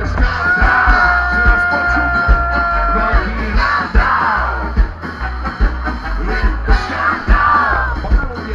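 Ska band playing live through a loud PA, with horns, drums, bass and guitar and a singer shouting lines over a steady heavy beat. One long held note runs for about three seconds near the start.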